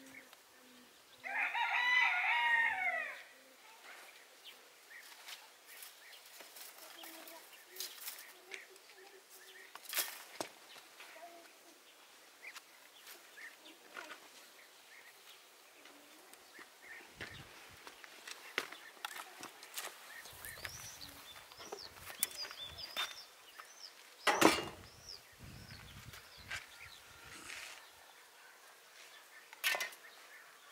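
A rooster crows once, loud, starting about a second in and lasting about two seconds. After it come faint clicks and knocks of wooden branches handled and fitted by hand, with one sharp knock about three-quarters of the way through, and small birds chirping faintly.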